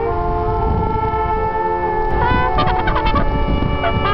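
Trumpets playing together: long held notes that step to new pitches, then from about halfway one breaks into quick, fluttering runs of high notes over the sustained tones.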